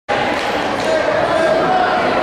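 Several people's voices calling and chattering at once, echoing in a large gymnasium.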